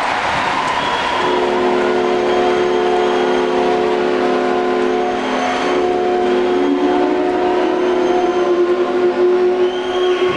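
Ice rink goal horn sounding one long, steady chord, starting about a second in, over general crowd noise: the signal that a goal has been scored.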